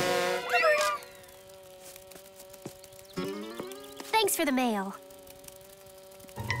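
Cartoon bee's wings buzzing in a steady hum, with short wordless vocal sounds from the character, one near the start and a rising-then-falling one about three to five seconds in.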